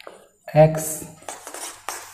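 Marker scratching across a whiteboard in several short strokes as characters are written, with a sharp tap near the end.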